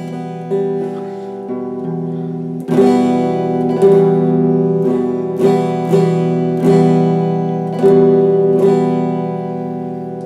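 Electric guitar picked with a plectrum, playing sustained notes that ring into one another in a slow, even rhythm. About three seconds in, the picking gets harder and the notes louder and brighter.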